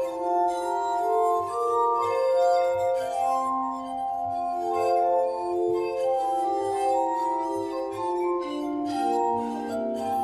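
Glass harmonica, with fingertips rubbing the rims of spinning glass bowls, playing overlapping sustained, ringing notes in a slow melody. It is accompanied by a small chamber ensemble of flute, oboe, viola and cello.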